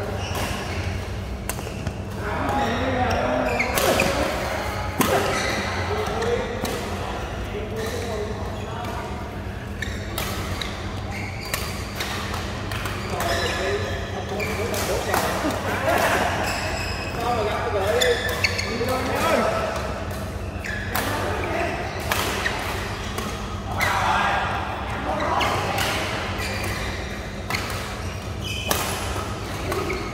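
Badminton rackets striking a shuttlecock in a doubles rally, many sharp hits about a second apart, echoing in a large hall, with players' voices and shouts between them.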